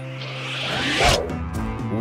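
A swoosh transition sound effect that swells for about a second and cuts off sharply, over light background music.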